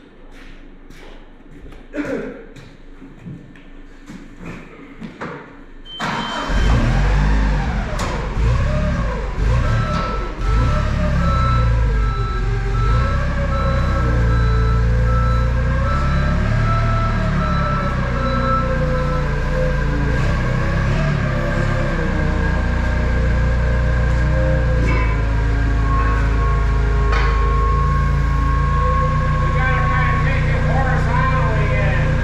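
A few scattered knocks, then about six seconds in a forklift engine starts and runs steadily, its pitch wavering up and down as it is worked.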